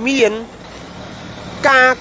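A man speaking, with a pause of about a second in the middle.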